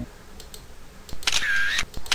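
A camera-shutter sound effect used as a slide-transition sound: one bright, mostly high-pitched burst about half a second long, a little past a second in.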